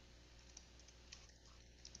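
Faint typing on a computer keyboard: a few scattered, quiet key clicks.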